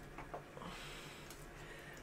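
Faint breathing through the nose over quiet room tone, with two soft clicks about a quarter of a second in.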